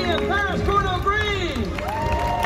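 A voice over a public-address system, its pitch swooping up and down in long glides, over an audience clapping and cheering.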